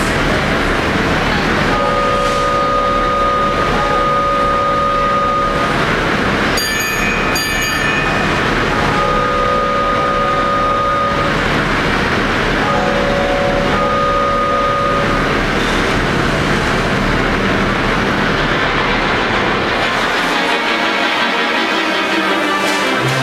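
Wurlitzer theatre pipe organ imitating a steam train: a steady hissing chug, three drawn-out train-whistle chords, and two short bright bell-like strikes between the first two whistles. Near the end the organ's music comes in.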